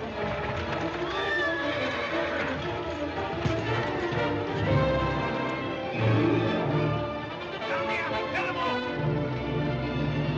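A horse whinnying, about a second in and again near the end, with hooves and a buggy's wheels on the street as it is driven off, over dramatic orchestral film music.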